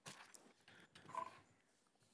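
Near silence: room tone in a meeting room, with a few faint scattered clicks in the first second or so.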